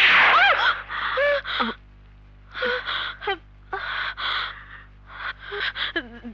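A woman gasps loudly, then sobs in short, breathy, wavering bursts with brief pauses between them.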